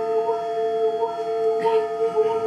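Improvised experimental music: one held, steady mid-pitched tone with several fainter steady tones above it, and a small wavering pitch line moving up and down. A brief soft hiss comes in near the end.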